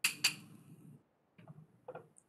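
Two short sharp clicks about a quarter second apart, followed by a few faint clicks.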